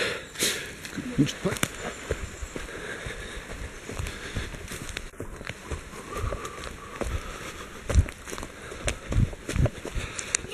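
Footsteps of a runner on a forest dirt path, an irregular series of thuds, the heaviest about eight seconds in and twice more near the end.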